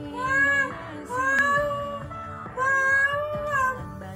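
A song with a high voice singing long arching notes, about three phrases, over a quiet accompaniment.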